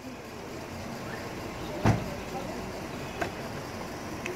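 Steady street noise with indistinct voices, one sharp thump about two seconds in and a smaller knock near the end.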